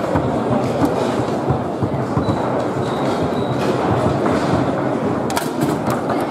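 Foosball table in play: a continuous clatter of rods and figures rattling over a steady hall din, with a few sharp knocks of the ball being struck near the end.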